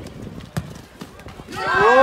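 A football kicked with a single thump about half a second in, then a long, loud shout from a voice on the pitch side, its pitch rising and then falling.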